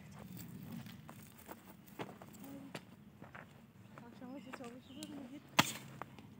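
A long-handled hoe striking the soil several times at uneven intervals, the loudest strike about a second before the end. Faint voices in the background.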